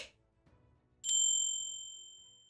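Subscribe-button animation sound effects: a sharp tap click, then about a second later a bright bell-like notification ding that rings out and fades over about a second.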